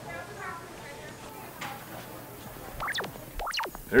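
Low room tone with faint voices at first, then a cluster of quick electronic sweeps and bleeps near the end, like a computer display starting up.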